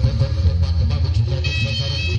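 Javanese jaranan (kuda lumping) accompaniment music: quick drum strokes over a steady low drone, with bright high-pitched notes entering in the second half.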